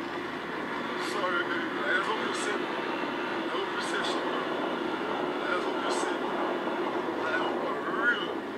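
A man talking outdoors into a phone, his words largely drowned by steady wind noise on the phone's microphone.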